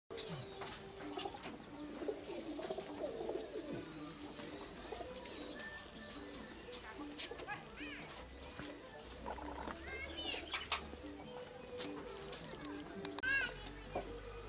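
Birds calling in the open: repeated low cooing notes of doves throughout, with a few sharp, quickly rising and falling chirps from smaller birds.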